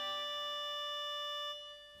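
Instrumental accompaniment holding a steady sustained chord, which fades away about one and a half seconds in, just before the tenor's entry.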